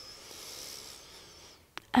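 A woman's long, deep inhale through the nose: a soft breathy hiss that lasts about a second and a half and then fades out.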